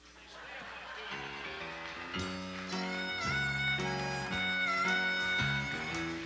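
Harmonica playing a song's opening melody over band accompaniment, with bent notes. The music builds from a near pause at the start to full volume about two seconds in.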